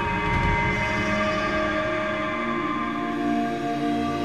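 Background music of sustained held tones, with a low rumble in the first part that fades out.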